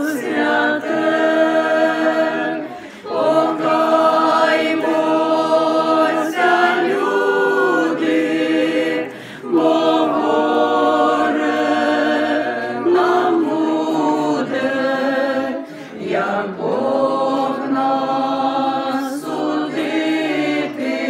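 A small mixed group of parishioners, mostly women with one man, singing a church song together unaccompanied. They sing in long held phrases, with short breaks about every six seconds.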